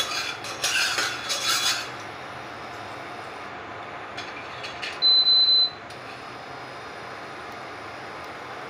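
A single high-pitched electronic beep from the cooktop's controls, lasting under a second, about five seconds in. Before it there is a short rustle and clatter at the pan in the first two seconds, then a steady low hiss.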